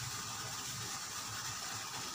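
Steady background hiss with a low hum underneath and no distinct events: room noise.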